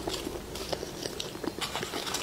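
Close-miked chewing and biting of food, with many small crisp crackles and clicks in quick, uneven succession.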